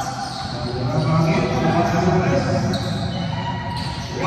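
A basketball bouncing on a hardwood gym floor during a game, with players' voices calling out across the court.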